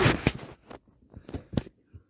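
Handling noise from a phone being moved and repositioned: a loud rub and bump at the start, then a few light knocks and clicks.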